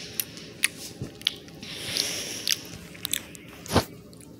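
Small plastic toy train pieces being handled: scattered light clicks and a short crinkly rustle about two seconds in, with one sharp click near the end.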